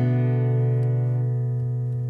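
Background music: one guitar chord held and slowly dying away, with no new strums.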